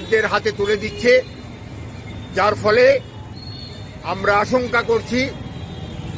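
A man speaking in short phrases, with steady background noise in the pauses.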